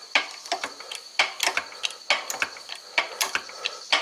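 Hand-pumped jack of a 15-ton shop press being worked, irregular mechanical clicks and clunks with the pump strokes as the press brake slowly bends sheet steel.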